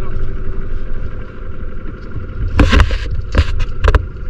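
A small boat's outboard motor running steadily at low speed. Loud bursts of noise come about two and a half seconds in and again near the end, as a round crab trap is thrown and handled on the bow.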